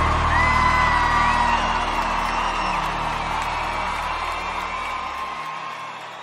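End of a live sertanejo concert song: the band's last chord rings out and fades while the crowd cheers and whoops, with a few whistle-like calls over it. The bass drops away about five and a half seconds in.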